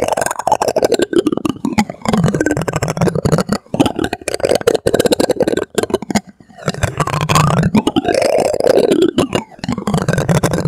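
A plastic spoon rubbed and scraped against the textured face of a star projector, making a dense, rapid, creaky clicking rasp. It comes in bursts, with short breaks about four and six seconds in.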